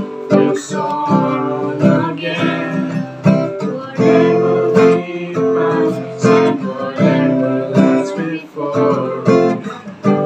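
Acoustic guitar strummed in a steady rhythm of chords, with a voice singing along.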